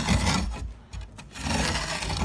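Irregular scraping and rubbing as the old toilet flange and its floor piece are handled, with a quieter gap about a second in.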